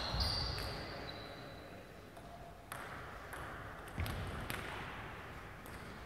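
Table tennis ball clicking and bouncing, a handful of sharp taps spaced roughly half a second to a second apart, with a brief high squeak in the first second.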